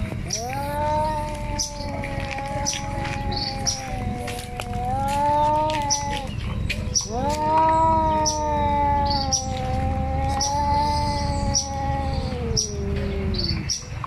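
Two cats yowling at each other in a face-to-face standoff: two long, drawn-out, wavering yowls, each about six seconds, with a short break about halfway. This is the warning yowl of a territorial confrontation between cats.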